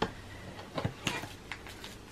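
Light cardboard and paper handling: a few soft clicks and rustles as a door of a cardboard advent calendar is opened and a coffee sachet is pulled out.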